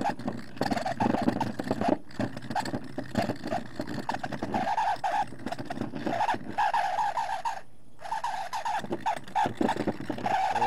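Motor-driven rock-polishing tool running with a steady low hum, and a chattering, squealing grind that comes and goes in irregular bursts as the rock is worked against the spinning wheel.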